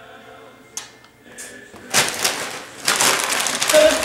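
Gift wrapping paper being torn and crumpled: a loud, crackly rustling that starts about halfway through.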